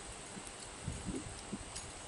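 A few faint, soft knocks and light clicks from handling a fishing rod and its metal pole holder mounted on a wheelchair.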